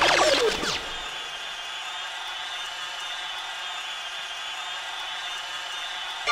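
Breakdown in a 1990s hardcore rave track: a falling synth sweep as the beat drops out, then a quieter sustained synth tone held without drums.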